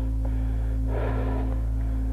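Cyclist breathing hard, two breaths about a second and a half apart, over a steady low rumble of wind on the microphone and a low hum.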